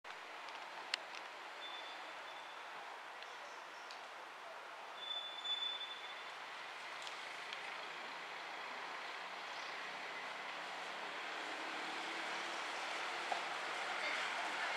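Steady outdoor background hiss that grows slightly louder, with two short high steady whistles in the first six seconds and a few faint clicks.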